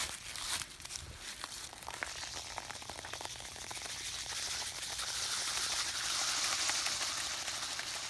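Fizzy drink pouring from a can onto broken discs on the ground: a hiss of fizz and splatter that builds from about two seconds in and swells toward the end, with a few light clicks in the first two seconds.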